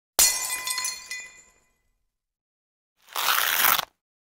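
Title-sequence sound effects: a sudden crash-like hit with several ringing tones that die away over about a second, then, near the end, a short burst of rushing noise that cuts off abruptly.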